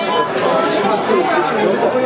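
Several voices talking at once over each other, loud and jumbled.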